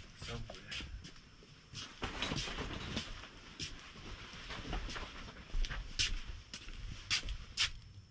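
Handling noise: scattered sharp clicks and light knocks with rustling, from objects being fumbled with and a hand-held camera being moved about.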